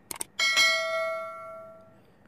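Sound effect of an on-screen subscribe-and-notification-bell animation: a couple of quick clicks, then a single bright bell ding that starts sharply and fades away over about a second and a half.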